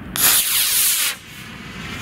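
Model rocket motor igniting with a sudden loud hiss that lasts about a second, then a fainter hiss as the 3D-printed X-15 model rocket climbs away.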